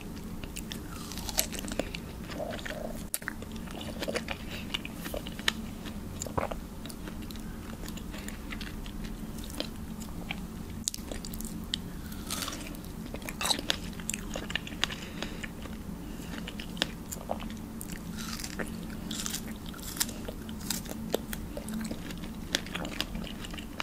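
Close-miked biting and chewing of fresh pink and white strawberries: wet, juicy mouth sounds with many sharp clicks and smacks as the fruit is bitten and chewed.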